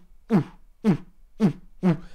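Beatboxed lip synth made with the throat: four short, punchy "ooh" notes blown through small, tightly rounded lips, each falling in pitch, about two a second.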